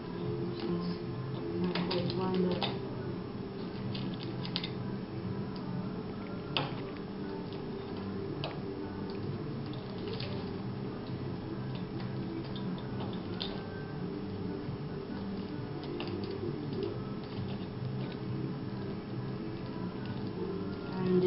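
Irregular small clicks and rustles of hands taping a plastic spoon onto a wooden mousetrap, over a steady low hum in the background.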